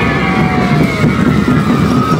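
School marching band playing: drums under a few high, slowly sliding held notes.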